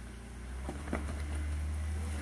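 Jeep Wrangler engine running low and steady as the rear tire crawls up onto a rock ledge, with a couple of faint clicks within the first second.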